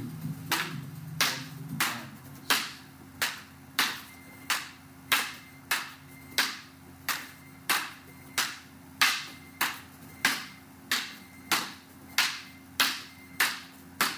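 Two pairs of taped rattan fighting sticks clacking together in a steady, even rhythm, about one and a half sharp strikes a second, as two partners trade strikes stick-on-stick in a double-stick drill.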